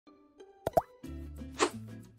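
Intro sting for an animated logo: two quick pops, the second rising in pitch like a bloop, a little past half a second in, after which a soft music bed with a low bass comes in and a brief whoosh passes.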